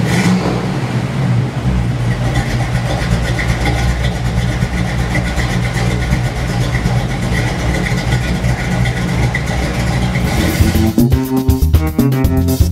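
A 1963 Chevrolet Impala's engine running steadily for about ten seconds, with guitar-led music coming back in near the end.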